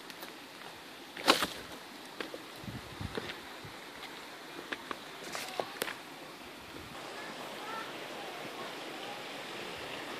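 Footsteps on loose rock and through dry brush, with scattered snaps and cracks of twigs and branches, the loudest about a second in, over a faint steady hiss.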